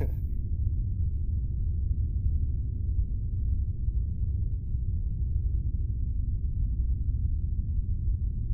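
A steady, muffled low rumble with nothing higher in it, running evenly with no distinct knocks or voices.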